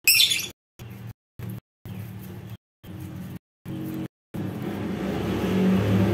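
A short, shrill lovebird screech right at the start, then a low motor hum that keeps cutting in and out and grows louder over the last two seconds.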